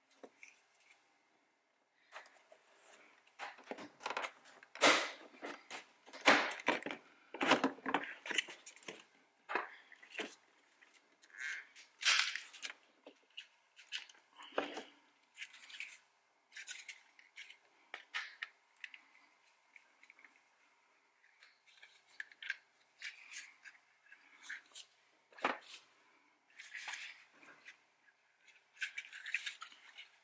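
Plastic clicks, snaps and scraping as a Toyota RAV4 door's window-switch panel is pried out of its clips with a plastic trim tool and the switch units are handled. A dense run of sharp snaps comes a few seconds in, followed by scattered clicks and rattles.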